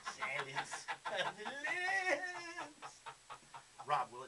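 A person's voice making wordless sounds: choppy at first, then a long wavering held note about two seconds in, which fades out before the end.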